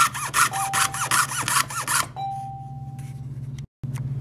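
Jeweler's saw blade cutting through a laminate countertop sample: quick even strokes, about four a second, each with a short rising-and-falling whine, stopping about halfway through. A steady low hum runs underneath.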